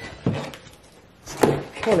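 Two short knocks of pieces being handled and set against a tabletop, a soft one near the start and a louder one about a second later.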